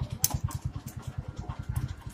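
An engine idling with a rapid, even low putter. A few light clicks of small metal parts being handled sound over it.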